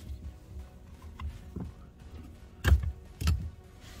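Rubber brake-pedal pad on a Tesla Model 3 being pulled off the pedal, with two sharp snaps about two-thirds of the way in and again half a second later. Faint background music runs underneath.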